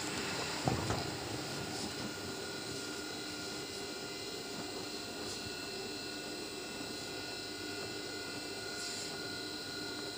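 Industrial sewing machine's motor humming steadily while it is not stitching, with a brief rustle and knock of cloth being handled about a second in.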